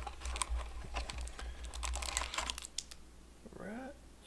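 Foil wrapper of a football card pack crinkling and crackling as it is pulled from its cardboard box and torn open: a quick run of small crackles over the first two and a half seconds, then quieter. A short voice-like hum comes near the end.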